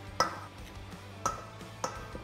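Eggs knocked against the rim of a stainless steel mixing bowl to crack them: three sharp knocks, each leaving a brief metallic ring. Soft background music runs underneath.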